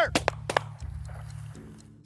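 Shotguns firing at a flushing rooster pheasant: a few sharp reports in quick succession within the first second. These are missed shots.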